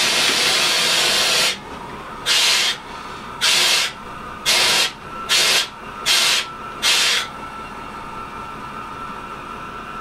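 Compressed air hissing out in a rail vehicle's cab: one long blast of about two seconds, then six short, sharp bursts about a second apart, typical of air being let off through the brake valve.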